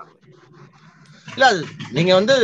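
A man's voice after a brief lull, starting about a second in with a drawn-out, rising-and-falling exclamation, heard through a video-call connection.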